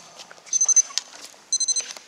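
Trainers squeaking on a sports-hall floor as a player turns and lunges to field a ball: two short bursts of high, stuttering squeaks, with a single knock about a second in.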